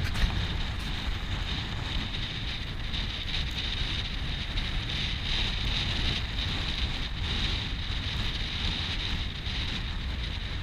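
Steady wind rushing over the action camera's microphone, with the low rumble of a car driving along a road underneath.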